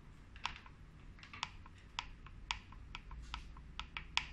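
Front-panel push buttons of an SMM1312 digital indicator pressed repeatedly, giving about eight or nine short sharp clicks at irregular intervals as a setting is stepped through.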